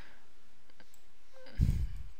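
A few faint computer mouse clicks over a steady background hiss, then a brief low thump near the end.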